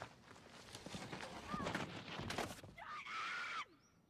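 Horse's hooves knocking and scrabbling as it rears and falls over backwards, then a high, shrill cry about three seconds in. The cry cuts off suddenly.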